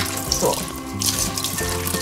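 Water running steadily from a handheld shower hose in a dog-grooming tub, with background music.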